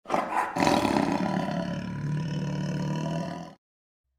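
A roar sound effect opening the video, rising again about half a second in, then fading slowly and cutting off abruptly near the end.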